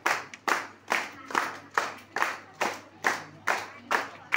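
Audience clapping together in unison to a steady beat, about two and a half claps a second, each clap echoing briefly.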